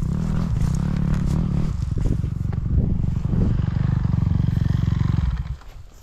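Off-road vehicle engine running steadily with a fast pulsing beat, dropping away abruptly about five and a half seconds in.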